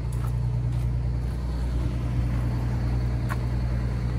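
Detroit Diesel two-stroke diesel bus engine idling with a steady, low rumble.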